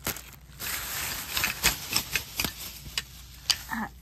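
Plastic-packaged craft supplies and paper packs crinkling and rustling as they are handled and shuffled. Irregular sharp clicks and taps run through the rustling.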